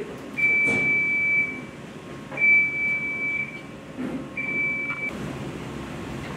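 Electronic beeper sounding three times: a single steady high tone, each about a second long and two seconds apart, the last one shorter. It sits over the steady hum of laundry machinery, with a few soft knocks.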